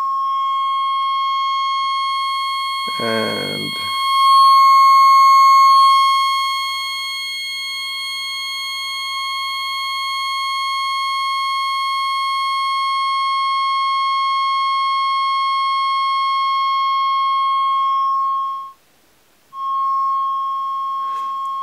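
Triangle wave of about 1 kHz passing through a Lockhart wavefolder (CGS52), a steady synth tone whose overtones grow brighter a couple of seconds in as the fold knob is turned up and fold the wave, then fade away again as it is turned back, leaving a plainer tone. The tone drops out briefly just before the end.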